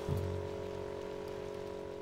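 A single chord of several steady tones held unchanged over an even, rain-like hiss, as a closing music sting.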